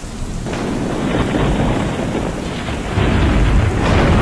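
Thunderstorm sound effect: a steady hiss of rain with rolling thunder, swelling in at the start and growing heavier, with a deep low rumble about three seconds in.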